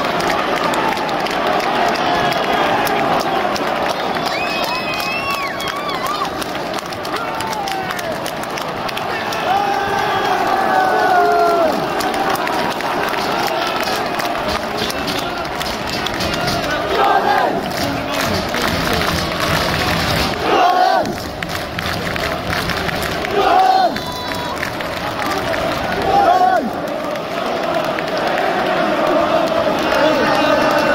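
Football stadium crowd of fans chanting and shouting, a steady mass of many voices, with several louder shouts from voices close by in the second half.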